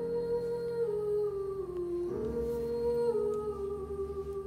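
A woman singing slow, held notes over soft accompaniment in a theatre. The melody steps down, rises again about two seconds in, then drops once more.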